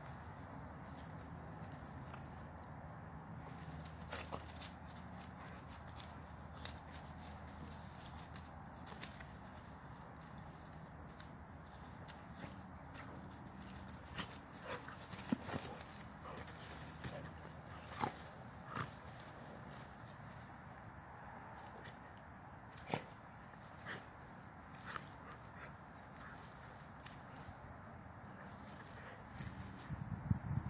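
Two dogs play-fighting on grass: low scuffling with scattered short, sharp sounds and brief dog noises, most of them in the middle of the stretch.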